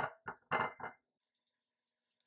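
A metal fork and sweet potatoes clinking against a ceramic plate: a few short, sharp clinks in the first second, one leaving a brief ring, then almost nothing.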